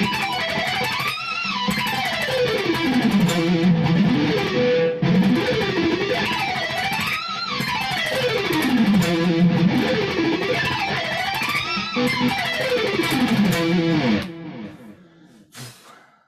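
Electric guitar playing a fast E harmonic minor arpeggio lick with alternate-picked sweeps, the notes climbing and falling in wide runs. The lick is played through about three times and stops about two seconds before the end.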